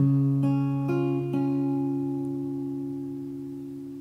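Acoustic guitar playing a three-note D-flat major chord (4th fret of the A string, 6th fret of the G and B strings), its notes picked in turn over about the first second and a half, then left to ring and slowly fade.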